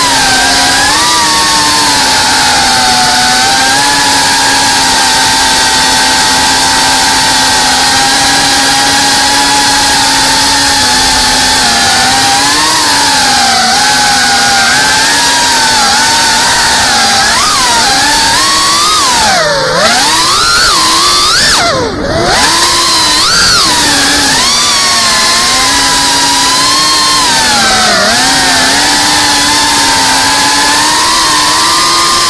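Brushless motors and propellers of an FPV quadcopter whining, heard from its onboard camera, the pitch rising and falling with throttle. Twice, a little past halfway, the throttle is cut and the pitch dives steeply before climbing back.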